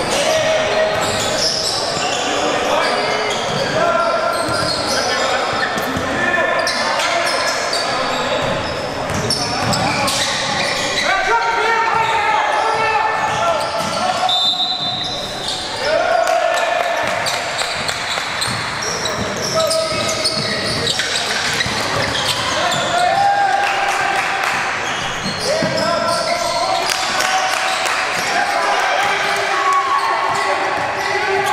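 Basketballs bouncing on a hardwood gym floor during play, with sneakers squeaking and indistinct players' and spectators' voices, all echoing in a large gym.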